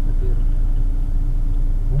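Car engine idling while stopped, heard inside the cabin through a dashcam's microphone: a steady low rumble with a constant hum over it.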